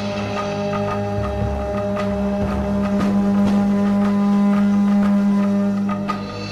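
Long wooden horns played live, holding one steady low drone note rich in overtones that swells slightly before breaking off at the end, with a few light percussion taps.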